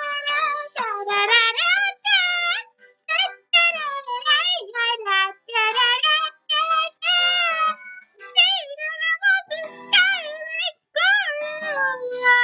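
One high-pitched voice singing in a Pinkie Pie character-voice impression, in quick, short, bouncing notes.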